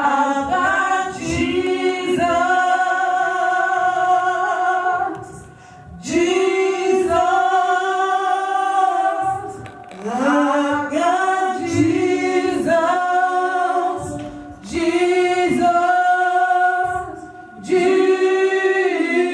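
A gospel choir of women's voices singing into microphones, in long held phrases broken by short pauses about every four seconds.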